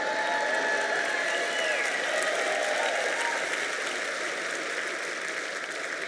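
Large audience applauding steadily, with a few voices heard through it in the first few seconds; the applause eases slightly near the end.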